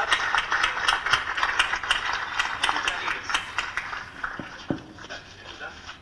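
Audience applause, many hands clapping at once, thinning out and dying away over the last couple of seconds.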